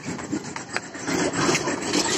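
Quick footsteps on concrete with the rustle of clothing and a backpack as a child walks briskly, the noise growing busier about a second in.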